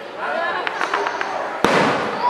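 Aerial fireworks going off: a few sharp crackles, then one loud bang about one and a half seconds in, over people talking in the crowd.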